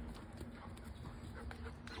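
German Shepherd puppies' paws thudding and scuffing on the ground as they run and tussle: a few irregular, uneven knocks.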